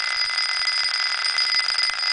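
Neo-spinner's ball spinning on its Rodin coil: a steady high-pitched whine over a hiss, which keeps on unchanged with the driver power cut.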